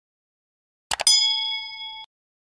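Two quick clicks about a second in, followed at once by a bright bell ding that rings on and fades: the sound effect of a subscribe button being clicked and its notification bell ringing.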